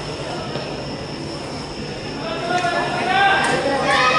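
Steady stadium background noise with a thin, constant high-pitched whine, joined about halfway through by louder voices from the stands or a public-address announcer.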